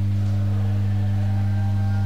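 Loud, steady low electrical hum on the live sound feed, unchanging throughout. Faint held higher tones join it about half a second in.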